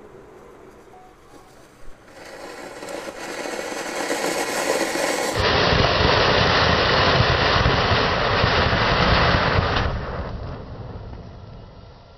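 Flower pot firework fountain hissing as it sprays sparks, building from about two seconds in to a loud steady rush, then dying away over the last two seconds.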